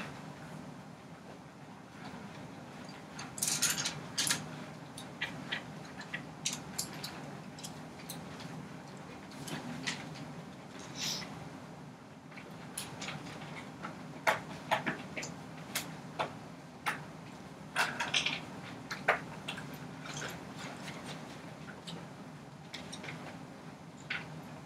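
Classroom room noise while students work quietly: scattered small clicks, taps and brief rustles over a low steady hum.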